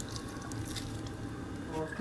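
Faint wet squishing of a lemon-juice and ginger-garlic paste marinade being squeezed and stirred with a metal spoon in a glass bowl.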